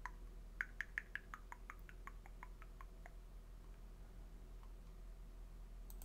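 A quick, even run of about a dozen light computer-mouse clicks, roughly six a second, fading off after about three seconds, over a faint low hum.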